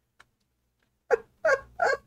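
A man laughing, three short staccato bursts about a second in.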